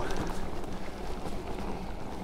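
Ride noise from a 2018 Specialized Turbo Levo electric mountain bike in motion: tyres rolling over the trail as a steady rushing noise, with a faint low hum underneath.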